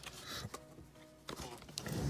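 Quiet rustling and a few light knocks as the paper dust jacket is slid off a large hardcover book, with faint steady tones underneath.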